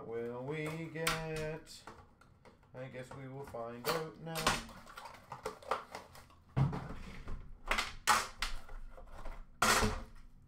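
A man hums a few held notes of a tune, then come sharp clicks and knocks of a metal card tin being handled and its lid taken off, the loudest knock near the end.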